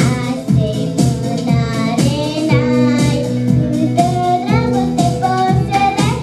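A young girl singing a song into a handheld microphone, over musical accompaniment with a steady beat of about two strokes a second.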